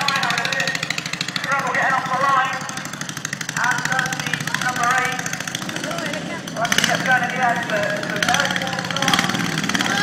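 Racing ride-on lawn mower engines running with a fast, buzzing beat as the mowers pass, over people talking.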